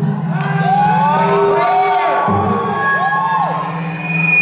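Audience cheering and whooping, with several high voices shouting in rising-and-falling calls, as a live band's song ends. A steady low hum runs underneath.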